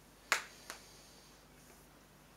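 Two finger snaps: a sharp one about a third of a second in and a fainter one a moment later, then quiet room tone.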